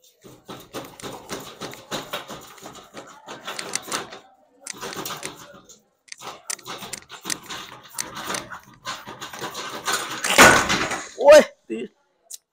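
A steel wrench handle and bench under a man's full body weight, creaking and clicking irregularly as he bounces on the bar without the bolt breaking loose. Near the end there is a loud thud as he comes off the bar, then a short grunt.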